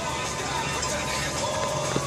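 Steady outdoor background noise with no clear event, a faint held tone in the second half and a light click at the very end.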